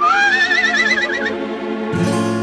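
Cartoon horse whinny: one rising call that wavers as it goes, lasting about a second, over steady background music.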